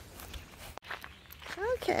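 Faint footsteps on grass over a low outdoor background; it cuts out suddenly just under a second in, and a spoken 'Okay' comes near the end.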